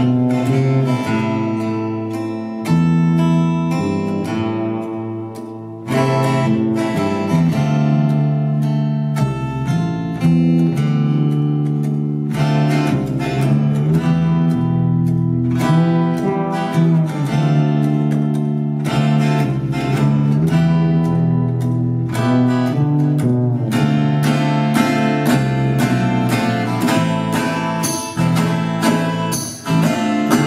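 Live band playing an instrumental passage: a strummed acoustic guitar over an electric bass line, with congas struck by hand and stick, and no vocals.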